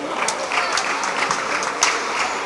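Spectators applauding, with individual sharp claps standing out over a steady clapping haze.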